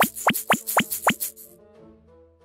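Cartoon plop sound effects for ketchup squirting into porridge: about five quick plops, roughly four a second, over children's background music with a shaker. The plops and shaker stop about one and a half seconds in, leaving soft sustained music notes.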